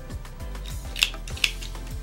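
Scissors snipping the yarn end, two short sharp snips about a second in, over soft background music.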